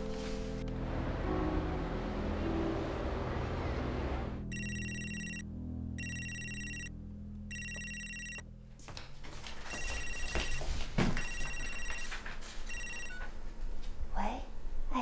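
Background music for the first four seconds or so, then a mobile phone ringing: an electronic ringtone of high beeping in bursts of about a second with short gaps, six times, ending just before the call is answered.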